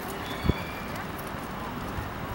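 Dressage horse trotting on arena sand, its hoofbeats soft and muffled. One louder low thump comes about a quarter of the way in.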